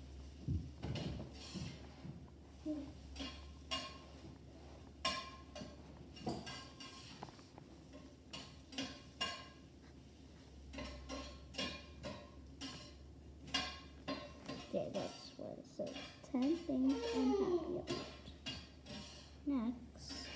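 Dishes and cutlery clinking and clattering: a string of short knocks and clinks, some ringing briefly. A faint voice comes in about three-quarters of the way through.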